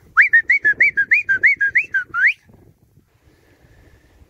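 A quick run of about a dozen clear whistled notes, each sliding up and then down, about six a second, ending on a higher rising note.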